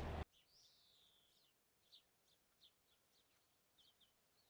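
Faint, distant bird calls over near silence: one high call that falls in pitch over about a second near the start, then several short high chirps.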